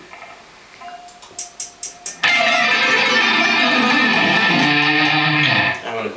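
Four quick, evenly spaced clicks count in. Then a Kona electric guitar, played through a Randall RT100H all-tube amplifier, starts suddenly into a loud, dense burst of alternate-picked notes at about 26 notes per second. The burst lasts about three and a half seconds and ends in a falling run of low notes.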